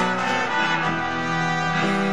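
Live band playing an instrumental passage with electric bass and guitar holding sustained chords. A sharp hit opens it, and the bass note drops to a new chord a little under a second in.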